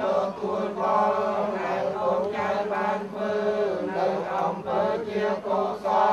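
A congregation of Buddhist laypeople chanting prayers together in unison: many voices in a steady, continuous drone.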